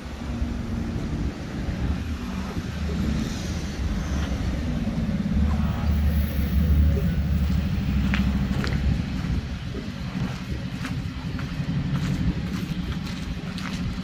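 A steady low outdoor rumble, swelling a little about halfway through.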